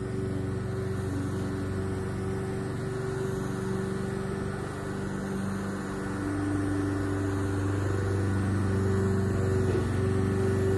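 The small motor of a cordless airbrush-style paint sprayer running steadily as it sprays a coating, a low hum that shifts slightly in pitch and gets a little louder about six seconds in and again near the end.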